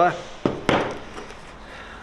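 Two sharp metallic knocks in quick succession about half a second in, from a diamond core bit for cutting porcelain tile with an angle grinder being handled while it is jammed with leftover tile rings.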